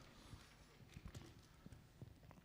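Near silence: faint room tone with a few soft ticks about a second in, from a handheld microphone being moved in the hand.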